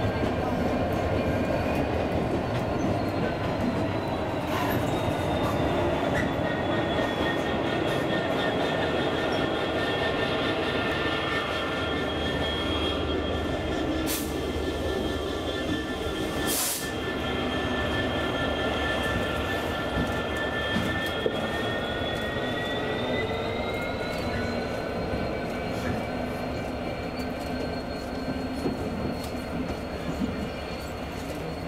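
GB Railfreight Class 66 diesel locomotive 66763, with its EMD two-stroke V12 engine, running steadily as it hauls coaches slowly past. A high steady whine sits over the engine, dipping slightly in pitch after a couple of seconds and rising again near the end, with two short sharp knocks in the middle.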